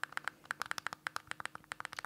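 Rapid clicking, about ten short clicks a second, from the center select button being pressed over and over on the Android TV build number entry. This is the repeated tapping that unlocks developer options.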